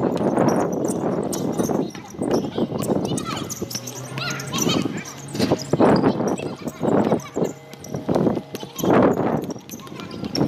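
People's voices calling out and shouting in irregular bursts.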